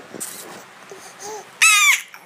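A toddler's short, high-pitched squeal near the end, after a faint little vocal sound.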